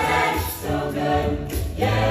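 Mixed-voice a cappella group singing sustained chords in close harmony, with a low vocal bass line underneath. The sound thins and drops softer through the middle, then the full group and bass come back in near the end.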